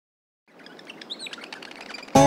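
Silence for about half a second, then birds chirping fade in over a soft outdoor background, with a few clear chirps near the middle.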